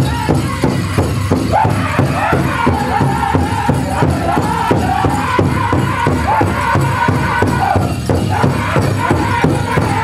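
Powwow drum and singers performing a chicken dance song: a fast, even beat on a large powwow drum under a group of voices singing high in unison.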